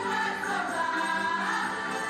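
Women's chorus singing a song together with accompanying music, performed live on stage.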